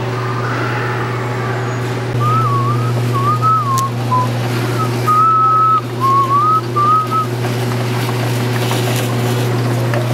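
A person whistling a short tune in wavering phrases, with one longer held note in the middle, over a steady low hum.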